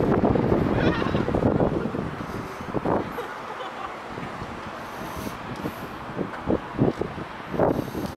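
Wind buffeting the microphone for about the first two seconds, then dying down to a softer windy background. A few soft knocks come near the end.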